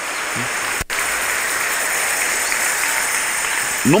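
Church congregation applauding steadily, the clapping briefly cut off for a split second about a second in.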